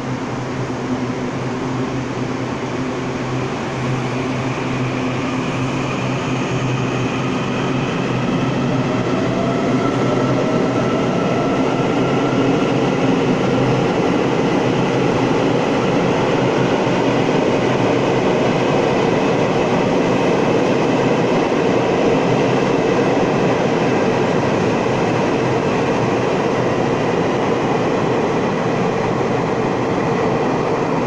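Taiwan Railways EMU800-series electric multiple unit pulling out of an underground station: a steady hum at first, then a traction motor whine rising in pitch as it accelerates, over a growing rumble of the train running past, echoing in the station.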